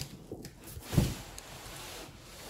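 Corrugated cardboard box flaps being handled and folded back, with one dull thump about a second in.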